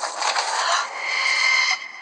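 Film-trailer sound effect: a dense rattling, scraping noise with a thin steady high tone through its second half, dropping away just before the end.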